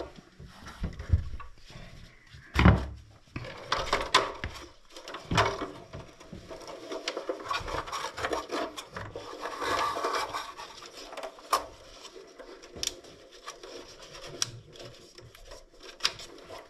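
Gloved hands handling the wiring and plastic connectors inside an Ariston Velis Evo electric water heater's open housing: rubbing with scattered clicks and knocks, the sharpest knock about two and a half seconds in.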